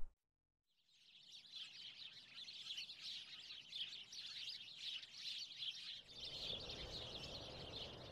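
Outdoor wildlife ambience: a dense chorus of high chirping fades in after about a second of silence and continues steadily. A low outdoor background noise joins it near the end.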